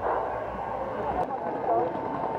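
Faint, distant voices calling out over a steady rushing background, with one sharp click a little after a second in.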